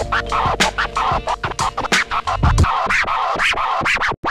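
Short hip-hop intro music built on rapid DJ turntable scratches, several strokes a second, over a steady low bass.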